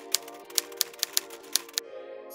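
Typewriter key-strike sound effect: about seven sharp clicks at uneven intervals, over soft background music.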